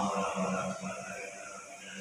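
A man's voice calling the adhan, the Islamic call to prayer, in one long held melodic note.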